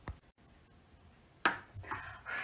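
A single sharp knock about one and a half seconds in as a blue cutting board with a knife on it is set down on a granite countertop, after a faint click at the start; otherwise quiet.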